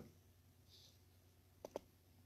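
Near silence with two quick faint clicks a split second apart, near the end.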